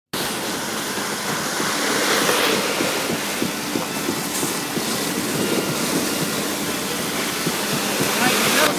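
Concrete pump running, with wet concrete pouring from its hose into foam ICF wall forms: a steady rushing noise with a low hum and small irregular thuds.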